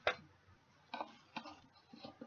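A few light clicks and taps of plastic parts of a water-bottle pump dispenser being handled: a sharp one at the start, two more about a second in, and fainter taps between.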